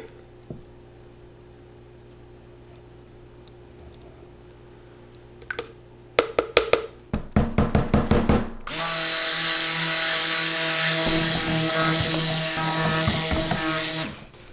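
A handheld stick blender runs steadily in cold process soap batter from about nine seconds in, blending the just-added lye solution into the oils and milk. Before it starts there is a run of quick knocks as the blender is worked in the plastic tub, and the first few seconds hold only a faint hum.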